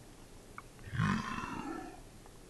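A man belches once, about a second in, a deep burp lasting about a second that falls in pitch, after a faint click.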